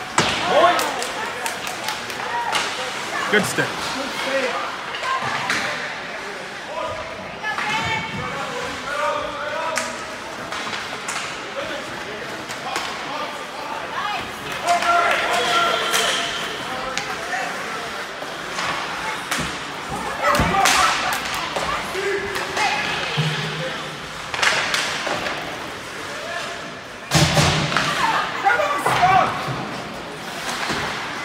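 Ice hockey game play in a rink: repeated thuds and slams of pucks and players against the boards and sticks on the puck, with voices shouting, and a louder slam near the end.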